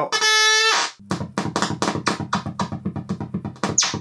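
1970s Practical Electronics DIY synthesizer's voltage-controlled oscillator sounding. A held buzzy tone lasts about a second, then a rapid even pulsing of about eight beats a second over a low buzz, and a quick pitch sweep near the end.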